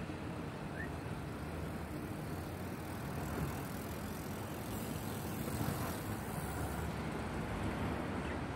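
Steady low rumbling background noise with no clear source, and one faint short chirp about a second in.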